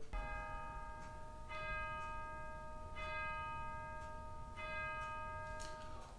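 A bell struck four times, about a second and a half apart, each stroke ringing on until the next.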